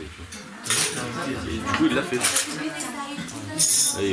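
Metal spoons and plates clinking and clattering as food and drink are handed round. There are several sharp clatters, the loudest about three-quarters of a second in and near the end, over low voices.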